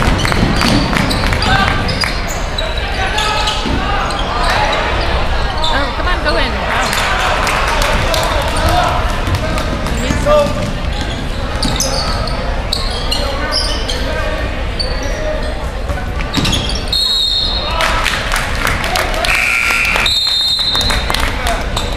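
Basketball being dribbled on a hardwood gym floor, with many thudding bounces over the steady chatter and calls of spectators in the large, echoing gym. A few short high-pitched tones come near the end.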